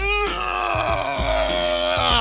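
A boy's long, strained groan of effort, held on one pitch, while straining to press a car tire overhead, with music playing underneath.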